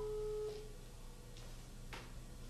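Telephone ringback tone heard over a mobile phone's loudspeaker: one steady tone that stops about half a second in, the call ringing and not yet answered. A click near the end.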